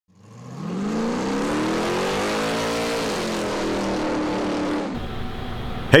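Car engine revving as an intro sound effect: it fades in, climbs in pitch for about two seconds, drops back, holds lower and cuts off about five seconds in.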